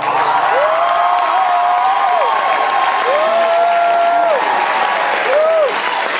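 Audience applauding and cheering loudly at the end of a song, with three long whoops rising and falling over the clapping.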